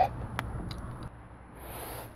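Faint handling noises from hands working a hose and its clamp in an engine bay: a sharp click about half a second in, a few light ticks, then a soft rustle near the end.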